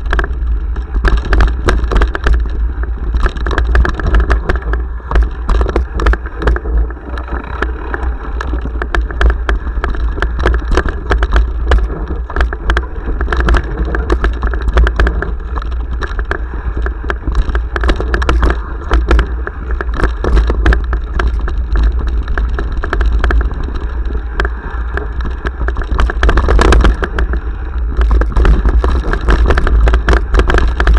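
Mountain bike riding fast down a rough dirt trail, recorded on a sports action camera: a steady low wind rumble on the microphone, tyre noise on the dirt, and constant rattling and knocking of the bike and camera mount over bumps.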